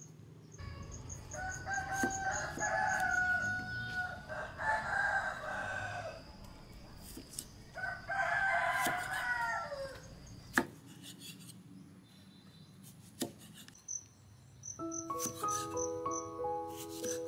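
A rooster crowing: one long crow from about a second in, then another about eight seconds in. A cleaver knocks a few times on a wooden chopping board as tomatoes are cut, and music comes in near the end.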